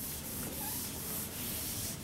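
Whiteboard eraser wiping across a whiteboard in a run of repeated rubbing strokes.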